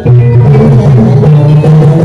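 Loud Javanese gamelan-style ebeg music, with drums and tuned mallet percussion playing steady, stepping notes.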